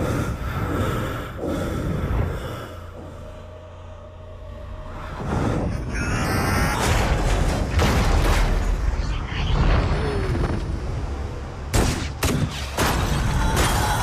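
Film action sound mix: deep rumbling booms under a music score. It dips briefly about four seconds in, grows loud again, and has a quick cluster of sharp impacts about twelve seconds in.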